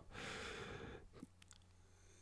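A soft breath out for about a second, then near silence broken by a couple of faint clicks.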